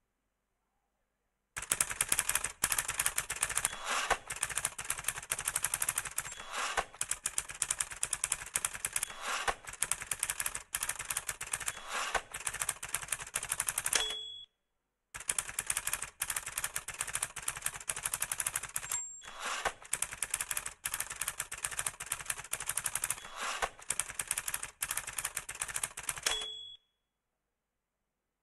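Typewriter sound effect: keys clattering rapidly in two long runs, each ending with a short ding of the carriage bell.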